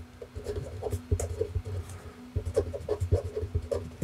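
Marker pen writing on paper: a quick run of short strokes as letters are written out by hand.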